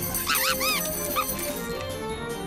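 Background music with a few short, high, rising-and-falling yelps from a cartoon animal: a quick group just after the start and a single short one about a second in.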